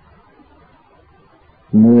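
Faint steady background hiss during a pause in speech, then a man's voice starts loudly near the end.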